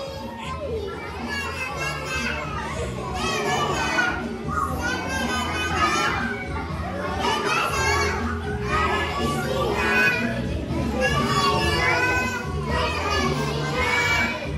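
A group of young children singing along with a recorded song that has a steady bass line.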